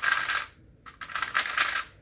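Rapid plastic clacking of a 3x3 speedcube being turned fast to finish a solve, in two quick flurries with a short pause between.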